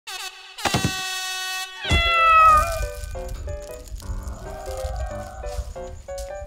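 Edited-in TV sound effects over a title card: a sharp hit with a ringing tone about a second in, a second hit with a falling, wavering tone about two seconds in, then a short music jingle of quick stepped notes.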